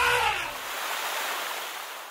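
Cartoon sound effect of water spraying from an elephant's trunk: a hissing gush that fades out at the end. In the first half second the end of a pitched call dies away into the spray.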